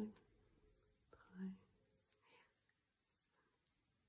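Near silence: room tone, with one short, soft hum of a voice about one and a half seconds in.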